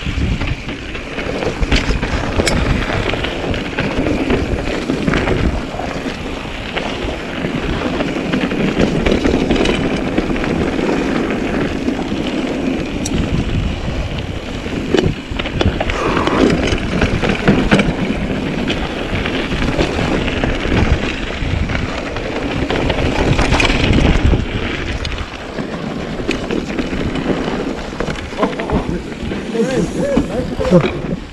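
Mountain bike riding fast down a dirt singletrack: knobby tyres rolling and crunching over dirt and roots, with the bike rattling and clattering over bumps throughout and wind rushing past the microphone.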